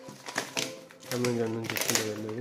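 Packing tape and a paper tear strip being ripped off a cardboard parcel, with short crackling rips about half a second in and again just before the end.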